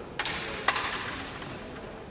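Carrom striker set down and slid on the powdered board as a player positions it on the baseline: a light click, a brief rasping slide, and one sharp wooden click about two-thirds of a second in.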